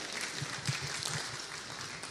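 Congregation applauding, gradually dying down.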